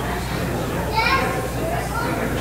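Indistinct voices of people and a child talking in a large, echoing hall, with a higher child's voice about a second in, over a steady low hum.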